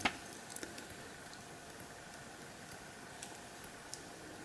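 Faint, scattered soft ticks and rustles of the paper pages of a small catalogue booklet being leafed through by hand, over quiet room tone.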